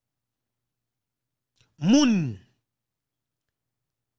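A man's single brief wordless vocal sound, a sigh-like drawn "hmm", about two seconds in, lasting about half a second, its pitch rising and then falling.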